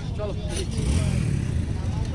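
Motorcycle engine running at idle, a steady low rumble that swells briefly in the middle, under a short spoken word at the start.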